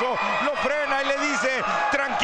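Speech only: a male commentator talking in Spanish without a break.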